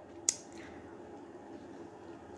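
Quiet room tone with a faint steady hum, broken once near the start by a single short, sharp click.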